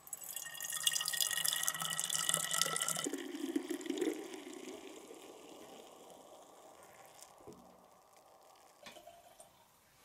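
Birch beer running from the spigot of a stainless steel pot into a green glass swing-top bottle: a loud splashing pour for about three seconds, then a lower, duller sound as the bottle fills, fading away toward the end.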